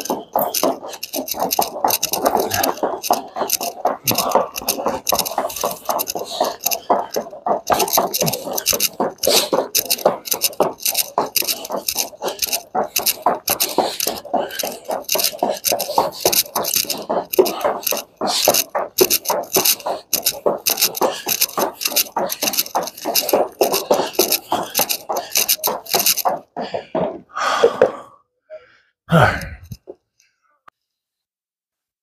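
Heavy battle ropes slapping a wooden gym floor in rapid, even alternating waves, a fast run of sharp slaps that stops suddenly near the end.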